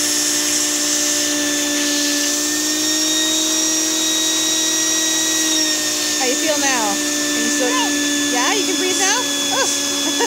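Wet/dry shop vac running with a steady whine and rush of air while its hose nozzle is held to a child's nostril to suck out mucus; the pitch shifts slightly about two seconds in and again a little past the middle as the nozzle comes away from the nose. A voice talks over the motor in the last few seconds.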